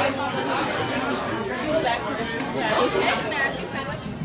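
Indistinct chatter of many people talking at once in a packed restaurant dining room.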